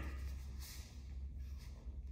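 Faint swishes of uniforms and soft footfalls of bare feet on foam mats as two people throw turning round kicks, over a steady low hum.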